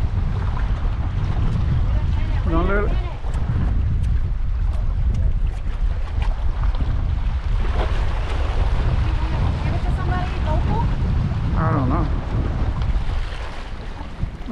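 Wind buffeting the microphone as a steady low rumble, over waves washing against jetty rocks, with a few brief bits of voice.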